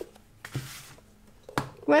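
A few light knocks and clicks as a plastic wet-palette case is set down and handled on a wooden table: one knock at the start, a short scrape about half a second in, then two sharp clicks about a second and a half in.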